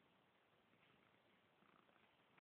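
A cat purring faintly.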